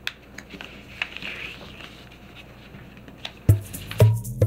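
A sheet of origami paper being folded and creased by hand: soft crinkling with scattered small clicks of the paper, and a loud thump near the end.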